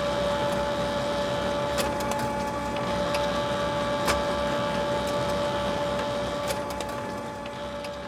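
Steady machine whine with a constant high tone over a low hum, broken by three sharp clicks spaced about two seconds apart.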